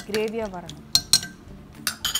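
A metal spoon clinking against a stainless steel bowl while stirring kidney beans in liquid, a few sharp clinks in the second half.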